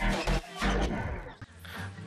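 Electronic dance music with a steady beat that fades out about three-quarters of the way through, leaving a faint low hum.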